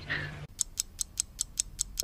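Rapid, even clock-like ticking, about five ticks a second, starting about half a second in: a ticking-clock sound effect marking a time skip.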